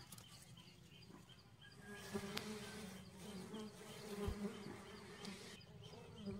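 Faint, steady buzzing hum of a wild honeybee colony, the mass of bees covering its exposed comb.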